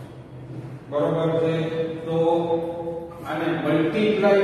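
A man's voice in two long phrases with held, drawn-out vowels, sing-song and chant-like, starting about a second in.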